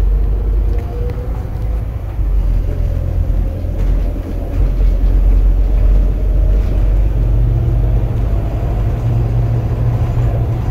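Diesel bus engine and road rumble heard inside the passenger cabin as the bus pulls away and gathers speed, with a faint whine slowly rising in pitch.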